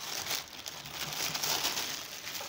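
Polka-dot wrapping paper crinkling and rustling in uneven bursts as it is handled and pulled away from a gift being unwrapped.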